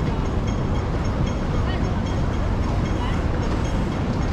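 Steady rumble of city road traffic at a street crossing beneath a flyover, with faint short high pips recurring about every half second.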